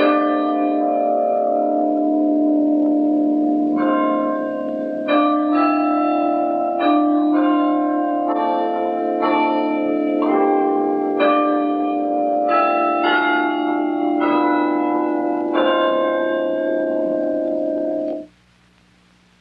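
Bells ringing a slow tune, each struck note ringing on and overlapping the next over a steady low hum of lingering tones. It stops abruptly at the very end.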